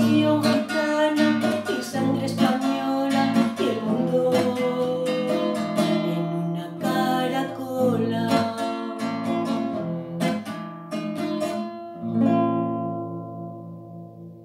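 Nylon-string classical guitar strummed with a woman singing over it. A final chord is struck about twelve seconds in and rings out, fading away.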